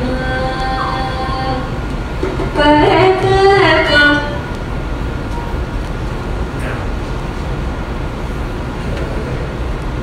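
Recorded Indian raga music played back over a lecture hall's loudspeakers. Held tones open it, a louder melodic phrase with sliding pitches comes between about two and a half and four seconds in, and a softer, steadier stretch follows.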